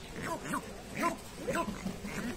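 Northern bald ibises giving a rapid series of short calls, about five in two seconds.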